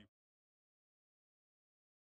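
Silence: the sound track drops out completely just after the start, leaving nothing at all.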